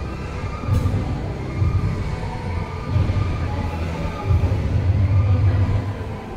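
Low, uneven rumble of food-court background noise, swelling and fading every second or so, with faint higher tones over it.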